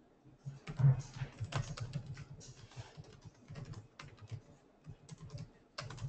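Typing on a computer keyboard: a quick, irregular run of keystrokes that starts about half a second in.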